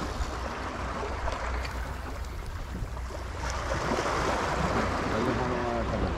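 Sea water washing and lapping against a breakwater, a steady wash that grows a little fuller after about halfway, with wind rumbling on the microphone underneath.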